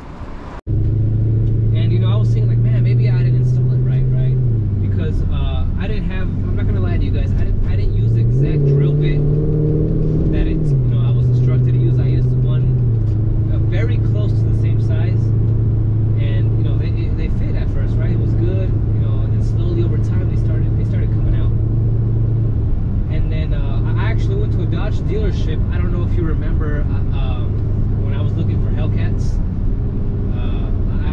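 A car's V8 engine droning steadily under way, starting abruptly just after the start. Its pitch drops about four seconds in, climbs again around eight seconds and then holds steady, with voices over it.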